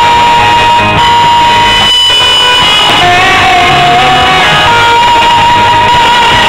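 Live rock band playing loudly: electric guitar over drums, with long held notes.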